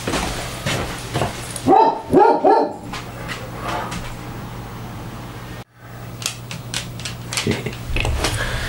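A dog barking: three quick barks in a row about two seconds in.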